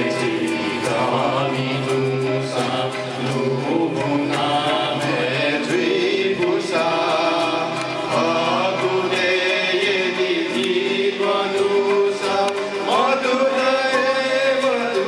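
A mixed group of men and women singing a welcome song together, accompanied by a harmonium holding steady notes beneath the voices.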